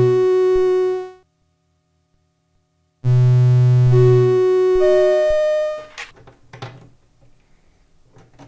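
Lyra-8 synthesizer voices sounding a sustained buzzy tone, switched on and off by an Ornament-8 sequencer loop: the tone stops about a second in, two seconds of silence follow, then it comes back for nearly three seconds with a higher note joining. A few quiet clicks and knocks from handling the patch leads follow near the end.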